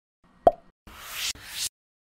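Logo intro sound effect: a single plop about half a second in, then two short rising swishes, each growing louder and cutting off sharply.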